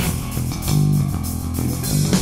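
Live rock band playing. The drum and cymbal strokes fall away and low held bass and guitar notes ring, with the full band coming back in near the end.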